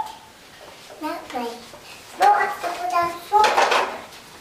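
Young children's voices: short high-pitched babbling sounds twice, then a loud shrill squeal near the end.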